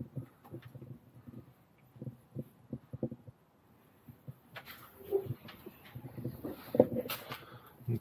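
Soft, irregular knocks and shuffling from someone moving about inside an empty bus for the first few seconds. Then faint, low voices in the second half.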